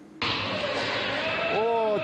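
A football kicked hard in an indoor sports hall, heard through an amateur video clip: a sudden loud start just after the beginning, then echoing hall noise, with a voice coming in near the end.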